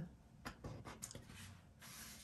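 Faint rubbing and a few light ticks of a slim tool and fingers on paper as a heart sticker is pressed down onto a planner page.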